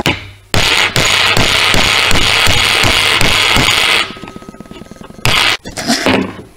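Hammer rapidly tapping a socket to drive a drive-shaft seal into a plastic outboard water pump housing, the housing resting on a metal block. Quick metallic strikes come about four a second for some three seconds, a thin ringing tone hangs on after they stop, then a brief second flurry of hits comes near the end.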